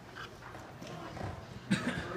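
Quiet, indistinct talking, with a sudden knock near the end.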